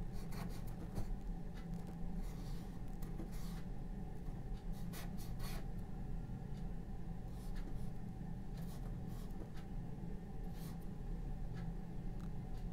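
A bristle brush scratching oil paint onto a primed painting panel in short, irregular strokes, over a steady low room hum.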